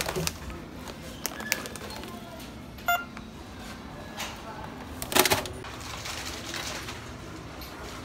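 Self-checkout barcode scanner giving one short beep, amid clicks and a brief rustle of grocery packaging being handled.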